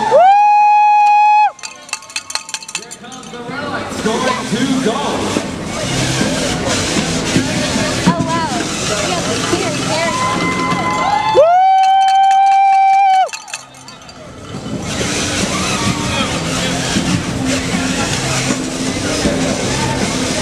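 A spectator close by gives two long, loud, high-pitched held cheers ("woo"), each about one and a half to two seconds, the second about eleven seconds after the first, over the steady hubbub of a competition hall.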